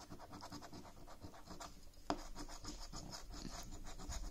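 A coin scratching the coating off a scratchcard: a quick, continuous run of small rasping strokes, one a little louder about two seconds in.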